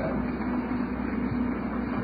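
Steady background hiss and low hum of a poor-quality lecture recording, with no other sound.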